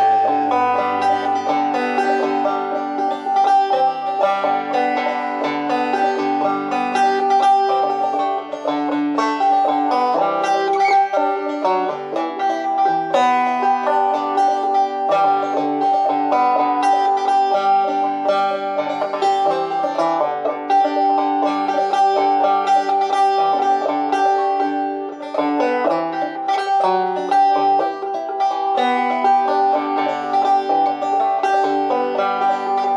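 Banjo-mandolin played solo with a pick, taking an instrumental break of a folk song's melody. One high note keeps ringing through most of it.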